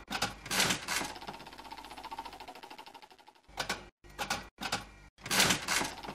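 Slot machine sound effect: a knock, then the reels spinning with rapid ticking that fades away, followed by a few separate knocks as the reels stop, the last one near the end the loudest.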